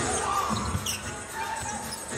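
Basketball being dribbled on a hardwood arena court, a few bounces in the first second, over the arena's background noise.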